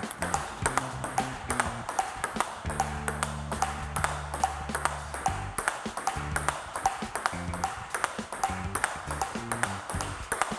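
Table tennis ball clicking off bat and table in a steady forehand rally, about two to three hits a second, over background music with a low bass line.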